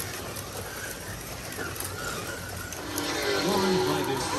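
Several 1/24-scale Carrera Digital slot cars running laps on the track, giving a steady mechanical whir-and-hiss from their small motors and guide braids. A brief voice comes in near the end.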